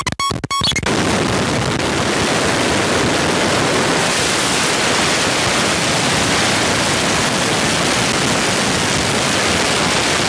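Eurorack feedback patch of a Mutable Instruments Sheep wavetable oscillator and a Vert mixer with Switches expander: choppy, stuttering pitched blips that, under a second in, give way to a dense, steady wash of noisy digital distortion. The patch is being re-patched and the Sheep's knobs turned.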